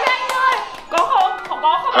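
A few quick hand claps mixed with excited young voices exclaiming.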